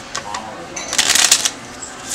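A deck of playing cards being riffle-shuffled on a tabletop. A few light clicks come first, then about a second in there is a fast, loud ripple of cards flicking together lasting about half a second.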